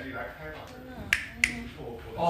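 Two sharp finger snaps about a third of a second apart, made to call a cat's attention, with a faint voice underneath.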